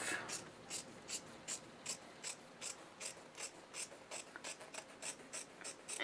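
Scissors snipping through fabric in a steady run of short, faint cuts, about three a second.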